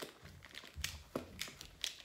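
A handful of pens and markers being handled, with a few light clicks and rustles as they knock together.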